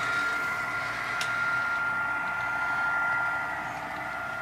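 Model train running on the layout: a steady whirring hum with a faint, even high whine under it, easing slightly near the end. A single sharp click comes about a second in.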